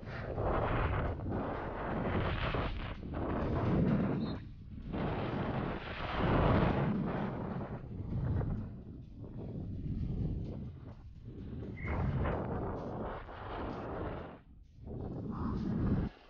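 Downhill mountain bike ridden fast down a dry, dusty dirt track, heard from a body-mounted GoPro: wind rushing over the microphone with the tyres and bike noise, rising and falling in surges with brief dips.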